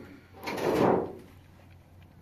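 Weathered wooden plank door being pushed open, a single scrape lasting under a second, starting about half a second in.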